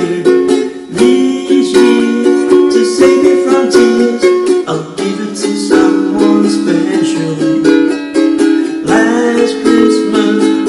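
Ukulele strummed in a steady rhythm, playing a run of chords.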